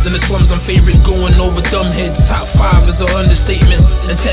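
Hip-hop track: rapped vocals over a beat with heavy bass kicks.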